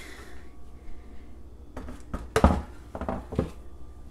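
Plastic baby bath support knocking against a kitchen sink as it is set down in it: a few short knocks about two seconds in, the loudest near the middle, then lighter ones.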